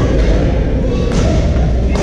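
Badminton rackets striking a shuttlecock: two sharp hits about a second apart, over the steady low rumble of a large sports hall.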